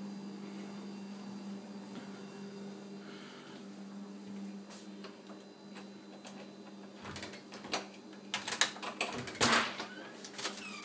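A steady low electrical hum, with a quick run of sharp clicks and knocks over the last three seconds.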